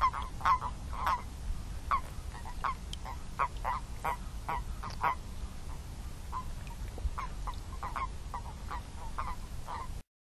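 Common toads croaking in a breeding pond: short calls, about two to three a second and irregular, some louder than others, over a low steady hum.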